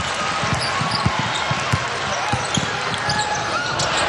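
A basketball dribbled on a hardwood court, an irregular run of low thumps, over steady arena crowd noise.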